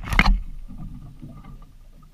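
Sea water sloshing against a small boat's hull, with a brief loud rush right at the start.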